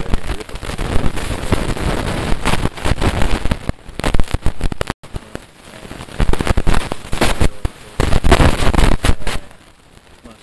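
Loud, irregular crackling and rustling noise covering the sound, with a sudden dropout about five seconds in and a quieter stretch near the end.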